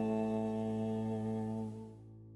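A bowed electric cello holding a long final note together with the other instruments in a steady, sustained chord, which fades and drops away near the end, leaving a faint lingering tone.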